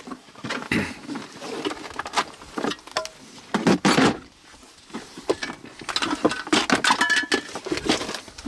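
Rummaging through plastic organizer cases and tools in a storage drawer: irregular clicks, rattles and clatter of plastic and metal being moved about, loudest about four seconds in.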